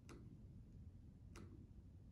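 Two faint, sharp clicks about a second and a quarter apart over near-silent room tone: keys being pressed to type an equation.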